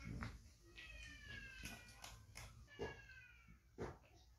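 Baby macaque giving two long, high, slightly falling coo calls, one after the other, with a few short clicks in between.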